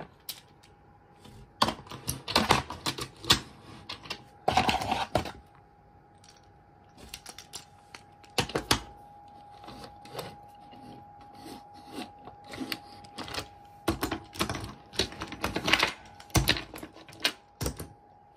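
Die-cast toy subway cars being handled and set down on a desk: a run of irregular sharp clicks, clacks and light knocks, denser in two spells, one a few seconds in and one near the end.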